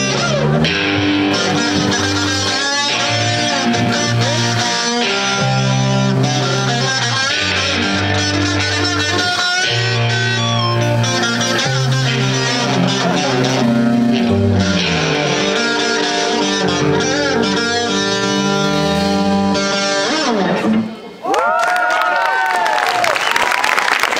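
Live rock band playing loudly: electric guitars, bass guitar and drums. About 21 seconds in the music drops out for a moment, then comes back with long held notes that bend in pitch.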